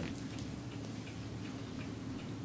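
Faint ticking over a low, steady hum in a quiet room.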